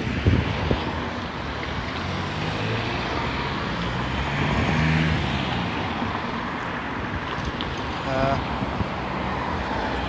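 Cars driving past close by on a road, a steady wash of engine and tyre noise that swells to a peak about halfway through.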